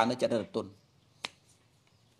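A man's voice preaching in Khmer that stops within the first second, then a pause broken by one sharp click a little after a second in.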